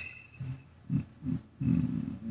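A man's low grunts under his breath: three short ones, then a longer one near the end, wordless sounds of effort while struggling to select the edges of a dense, high-poly mesh.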